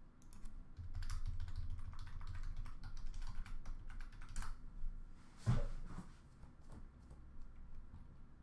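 Typing on a computer keyboard: a run of quick key clicks, with a single thump about five and a half seconds in.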